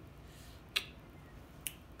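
Two short, sharp clicks a little under a second apart, the first louder, over quiet room tone.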